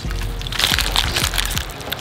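Crackling and crinkling of a plastic blister pack of frozen mysis shrimp cubes being handled, over a steady low hum and faint music.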